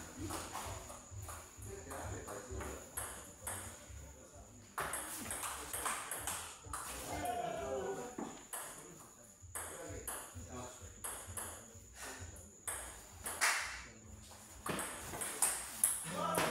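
A table tennis ball being hit back and forth in rallies: short sharp clicks of the ball off the paddles and bouncing on the table, one after another, with voices in the background.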